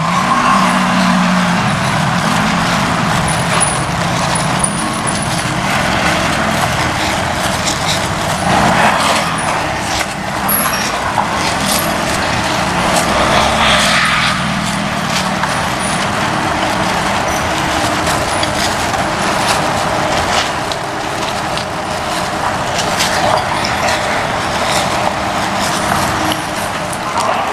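Steady road traffic noise, a continuous hiss and rumble of passing vehicles.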